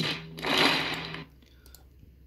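Audio of a short film clip of a crowd facepalming, played through computer speakers and picked up by a phone: a burst of noise over a steady low hum that cuts off about a second and a quarter in.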